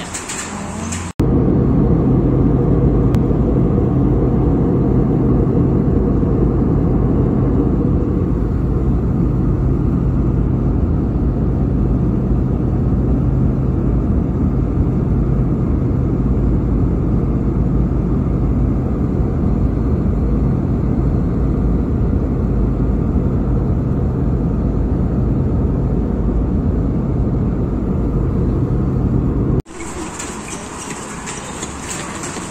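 Steady drone of an airliner cabin: engine and airflow noise with a constant low hum. It starts abruptly about a second in and cuts off abruptly just before the end.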